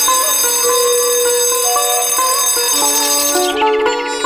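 Electric bell ringing continuously, then cutting off about three and a half seconds in: the bell that ends an exam. Film music with plucked-string notes plays underneath.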